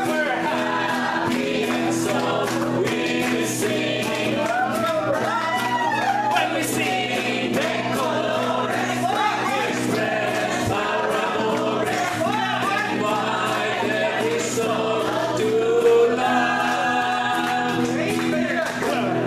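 A group of people singing together over sustained instrumental accompaniment, with hand clapping in time.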